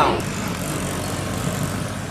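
Steady street noise with traffic.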